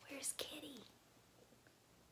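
A woman's short, soft, breathy utterance in the first second, then quiet room tone.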